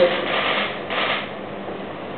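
A pause in a man's speech: steady background hiss with a couple of soft rustling sounds.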